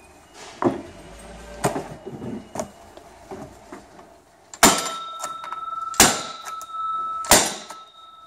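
Telescoping metal basketball pole being banged down end-first onto cardboard to seat the middle section onto the bottom section. After a few light knocks, there are three loud strikes about a second and a half apart, each leaving a ringing tone in the metal tube.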